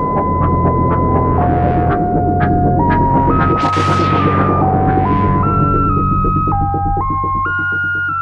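Electronic synthesizer music: a clear single-note synth line holds one pitch, then steps down and up in a slow melody over a low throbbing drone. Sharp ticks sound in the first second or so, and a rushing hiss swells and fades about four seconds in.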